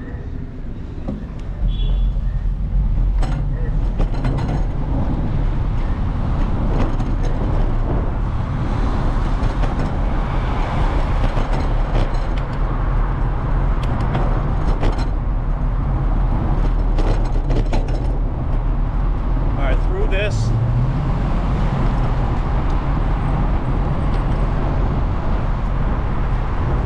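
Wind buffeting the microphone of a bike-mounted camera, over street traffic and road noise while riding a bicycle through city streets. The loud, steady rumble sets in about two seconds in as the bike gets moving. Short knocks are scattered through it.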